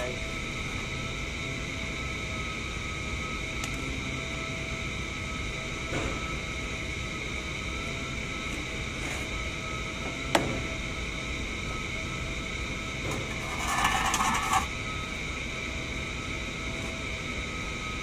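Steady hum of workshop machinery, holding a few fixed tones, with a sharp click about ten seconds in and a short scraping rustle a few seconds later as the plastic bumper is handled.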